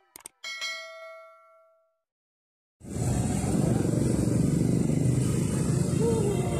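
Two quick clicks followed by a bell-like notification ding that rings out for about a second, a subscribe-button sound effect. After a short silence, loud steady street noise with traffic rumble cuts in about three seconds in.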